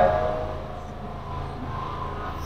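A pause between lines of a male group chant: the last line's echo fades out over the first half second, leaving a low, steady hum.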